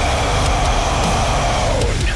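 Heavy metal backing track at a breakdown: loud, distorted low guitars and drums pounding out fast, dense low chugs without a break.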